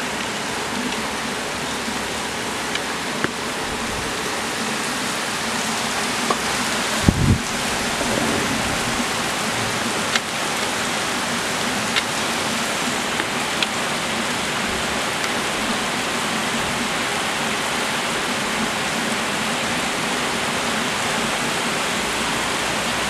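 Rain pouring steadily onto a street, a dense even hiss, with a few sharp ticks of drops striking something nearby. A brief low thump comes about seven seconds in.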